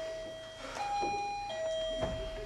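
Two-note doorbell chime ringing ding-dong, a higher note then a lower one, repeated: the low note of the first ring fades at the start, and a second ding-dong comes about a second in, its low note ringing on.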